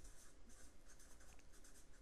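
Felt-tip marker writing on paper: faint, quick scratchy strokes as a word is lettered.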